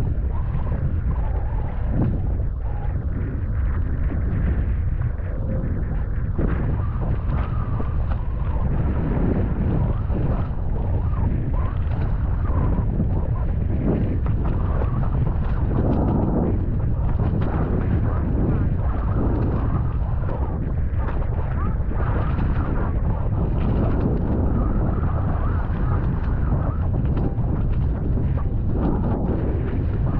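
Wind buffeting the microphone of a wing foiler's camera out on the water: a loud, steady low rumble with stronger surges now and then.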